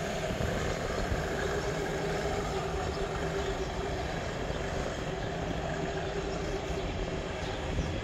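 Alstom diesel-electric locomotive running steadily as it pulls its train away, with a thin steady hum.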